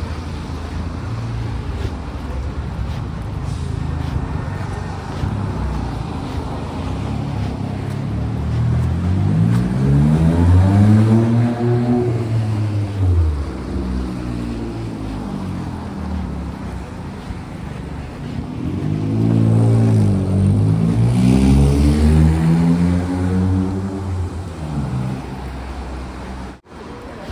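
Traffic passing on a wet street, with tyres hissing over the wet road. Twice, about ten and about twenty seconds in, a vehicle goes by loudly, its engine note rising and then falling.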